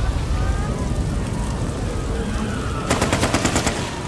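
Sound design of an animated episode: a low, steady rumble, then about three seconds in a rapid burst of sharp cracks, roughly ten a second, like machine-gun fire, lasting under a second.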